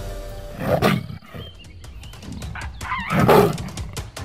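Two loud animal calls, one about a second in and a louder one just past three seconds, over background music.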